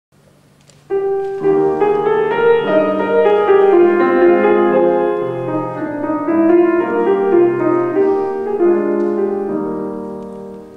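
Grand piano playing the introduction to a comic song, starting suddenly about a second in.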